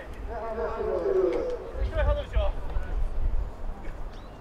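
Distant voices calling out, twice, over a low rumble.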